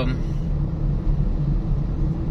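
Steady low rumble of engine and road noise heard inside a moving car's cabin.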